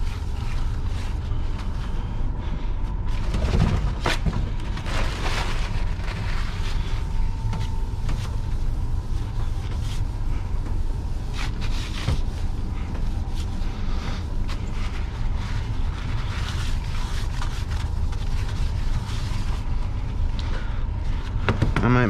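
A rag wiping down a work counter with mineral spirits: irregular rubbing and scrubbing strokes over a steady low hum with a faint high tone.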